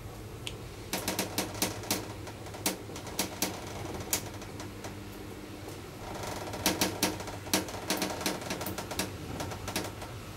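1992 KONE traction elevator travelling in its shaft: a steady low hum with irregular sharp clicks and ticks, which come thickest in the second half.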